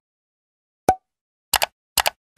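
Animated end-screen sound effects: a single short pop about a second in as a Subscribe button appears, then a quick double click near the end.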